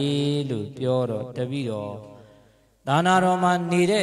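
A Buddhist monk chanting into a microphone in long held tones. The voice fades out about two seconds in and comes back after a short pause just before the three-second mark.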